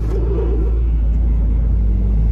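Honda car's engine and running gear, heard from inside the cabin as a steady low rumble while the car rolls slowly.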